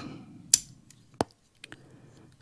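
A few light clicks from a small X-wing toy model being handled as its landing gear is folded, with one sharp click just after a second in and small ticks near the end.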